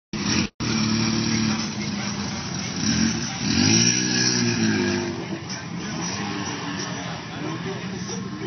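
Polaris RZR side-by-side's engine revving as it plows through deep creek water, with water splashing and rushing around it; the engine note swells up and falls back about halfway through. The sound cuts out for a moment just after the start.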